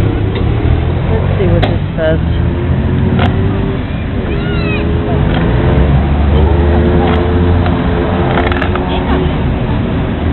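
Urban street traffic with a vehicle engine rumbling low and steady, and people's voices in the background.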